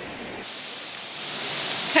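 Waterfall on a mountain stream, a steady rush of falling water that grows a little louder near the end.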